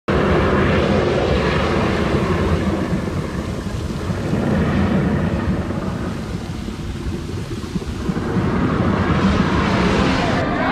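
Loud, continuous rumbling noise that eases a little partway through and swells again near the end.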